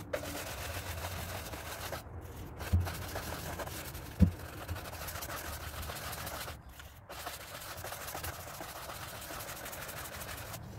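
Bristles of a large wax brush scrubbing wax over a chalk-painted chair back, a steady rubbing hiss. Two dull knocks come about three and four seconds in, the second the loudest.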